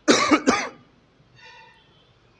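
A man coughs twice in quick succession right at the start, close into a clip-on microphone held at his mouth.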